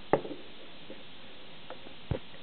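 A sharp knock just after the start, then a few faint clicks and taps of a plastic spoon against a plastic toy plate and bowl while a flour-and-water paste is stirred, over a steady background hiss.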